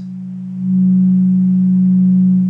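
HackMe Rockit synthesizer sounding a steady low sine-wave note while its filter cutoff knob is turned; the tone barely changes, because a sine wave gives the filter nothing to work on. It is quieter for the first half second, then steadies at a louder level.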